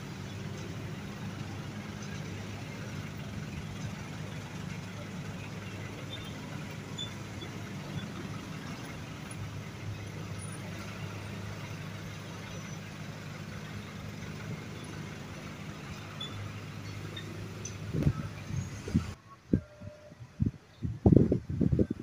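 Steady low hum of a standing train, two held tones under general outdoor noise. Near the end the sound cuts off suddenly, and wind buffets the microphone in loud irregular gusts.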